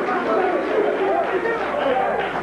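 Several people talking over one another at once, a steady jumble of overlapping voices with no single clear speaker.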